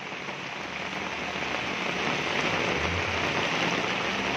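Heavy rain falling onto a flooded street: a steady hiss of rain on standing water that grows a little louder over the first two seconds.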